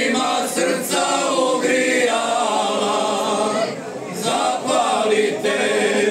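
Men's folk singing group singing a Slavonian folk song in several-part harmony, with long held notes. There is a brief break between phrases about four seconds in.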